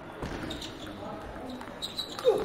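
Table tennis ball clicking off the paddles and table during a rally, several short sharp ticks at irregular spacing over background voices.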